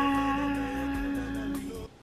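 A woman's voice drawing out a sung "byeee" on one steady held note, with a short upward slide at the start; it stops shortly before the end.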